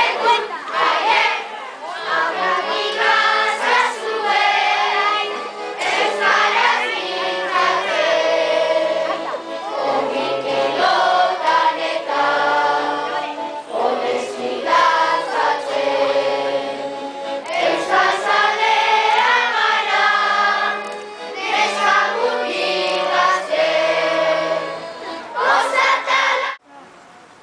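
A song with a chorus of children's voices singing a melody over an instrumental backing with a steady bass line.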